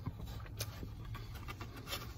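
Quiet chewing of a mouthful of hot dog, with a few soft, scattered mouth clicks over a low steady rumble.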